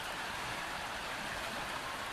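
Steady rushing of the Yellowstone River's current, an even wash of water noise without breaks.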